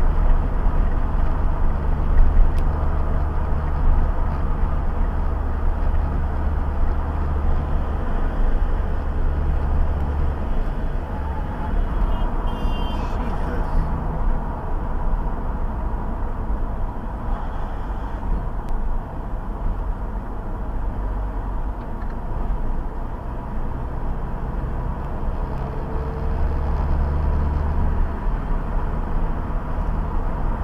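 Steady road and engine noise of a car cruising at freeway speed, picked up by a dashcam inside the cabin. It is a low rumble with tyre hiss, a little quieter through the middle.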